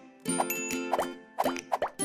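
Short electronic outro jingle with several quick cartoon pops, each a short glide in pitch, bunched close together in the second half.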